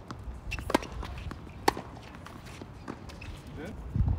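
Tennis ball struck by rackets on an outdoor hard court during a doubles rally: sharp pocks, one about three-quarters of a second in and a louder one about a second later, with a few fainter taps.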